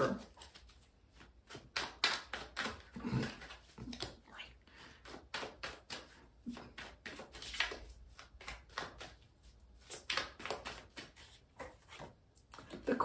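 A deck of tarot cards being shuffled by hand: a long run of soft, irregular card clicks and riffles.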